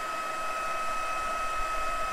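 Handheld embossing heat tool running, blowing hot air onto cardstock to melt white embossing powder: a steady fan hiss with a constant high whine.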